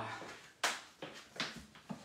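Footsteps on a wooden floor: about four sharp steps roughly half a second apart.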